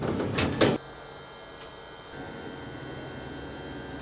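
Electric motor of an ambulance's power lift gate running with a steady hum, after a short loud clatter of the metal platform at the start.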